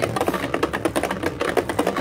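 Beyblade spinning top, fitted with a Circle Flat tip, spinning and circling around a plastic stadium at fast speed, giving a rapid, rattling run of clicks.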